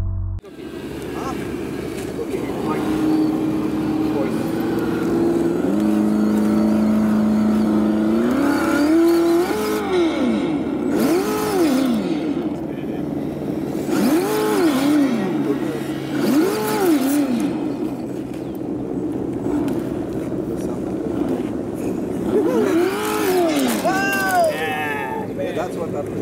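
Radio-controlled scale crawler truck's electric motor and gear train whining, the pitch stepping up and then rising and falling in repeated throttle bursts every second or two.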